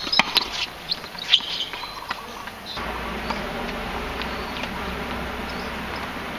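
Tennis rally on a hard court: a few sharp racket strikes and ball bounces with short sneaker squeaks over the first second and a half. From about three seconds in, a steady low buzz.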